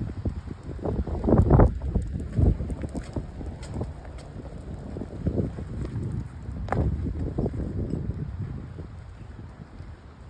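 Wind buffeting the microphone in irregular low gusts, with a few short knocks mixed in.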